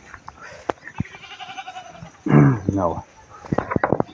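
Calves bawling: a faint, higher call about a second in, then a louder, wavering call a little after two seconds. A few sharp clicks follow near the end.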